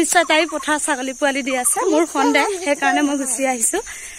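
A woman talking, over a steady high hiss.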